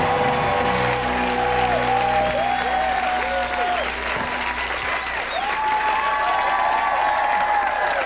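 Studio audience applauding as the game show's theme music plays. The music's low notes fade out about halfway through, leaving the applause.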